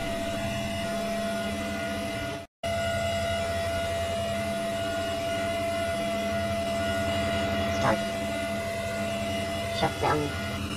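A steady hum with several steady tones, broken by a moment of dead silence about two and a half seconds in. A couple of faint clicks come near the end.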